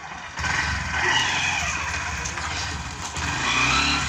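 A small motorcycle engine running steadily, with a low rumble that gets a little louder about three seconds in.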